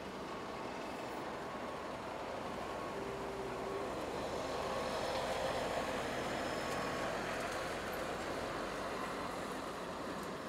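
Engine of a heavy loader running as it drives past carrying a car on its forks, a steady rumble that swells toward the middle and eases off again.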